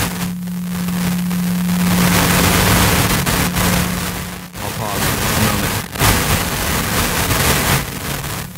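A failing microphone breaks up into loud static and crackle with a steady hum that drops out about halfway through, burying any voice. The audio is fuzzy and messed up from a faulty body-worn mic feeding the PA or recording.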